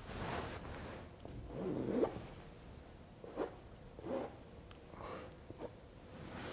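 Paintbrush dragged across a stretched canvas: a handful of short, scratchy strokes, the loudest about two seconds in.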